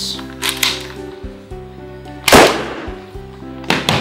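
A single pistol gunshot sound effect about two seconds in, the loudest sound here, with a short decaying tail, over steady background music; a shorter, sharper hit follows near the end.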